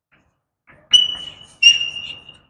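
Chalk squeaking against a blackboard while writing: two high-pitched squeals, the first about a second in and a longer one just after.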